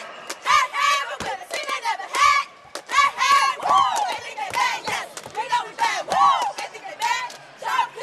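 A cheerleading squad of girls shouting a chant together in high voices, with hand claps.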